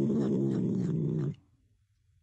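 Domestic cat giving one low, steady growl while eating a treat; the growl cuts off a little over a second in.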